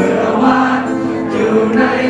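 A song performed live: a voice singing long held notes into a microphone, with acoustic guitar accompaniment.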